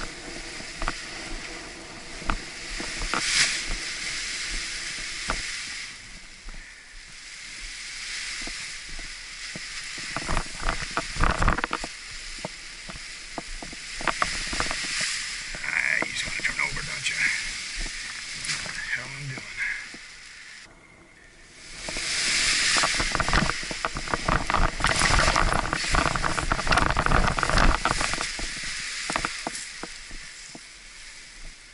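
Wind rushing over the microphone while an Edel Power Atlas paraglider wing is kited, its nylon canopy rustling and snapping with many sharp cracks. There is a brief lull a little past two-thirds of the way through, then a louder stretch of wind and fabric noise.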